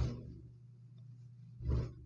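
Low steady hum picked up by an open microphone, with two short bursts of noise close to the mic: one at the start that fades quickly, and one shortly before the end.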